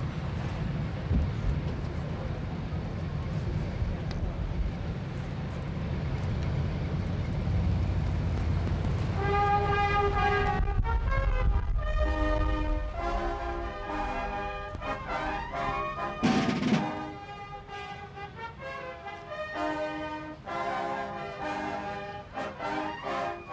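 A low rumble for the first nine seconds or so, then a brass band with drums starts playing about nine seconds in.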